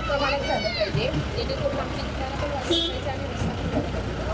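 Street traffic: a steady low rumble of passing road vehicles, with a short high tone about three seconds in, under nearby voices.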